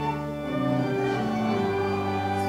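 Church organ playing a hymn in sustained held chords, the chord changing about half a second in and again near the end.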